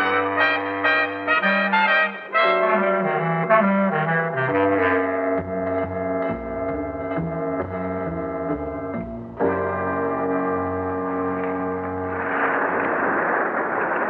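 Brass-led jazz band music with trombone and trumpet, serving as a radio-drama bridge: a quick run of short notes gives way to long held chords. A steady rushing noise takes over near the end.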